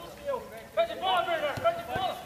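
Men's voices talking and calling out, with a short sharp knock about one and a half seconds in.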